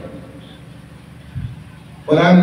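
A pause in a man's amplified speech, filled by a steady low background rumble and hiss. There is one brief soft low thump about one and a half seconds in.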